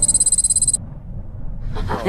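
A high-pitched, rapidly pulsing electronic beep that cuts off suddenly after under a second, followed by a low rumble.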